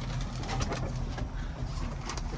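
Tractor engine idling with a steady low hum, heard from the open cab; a few faint clicks about half a second in.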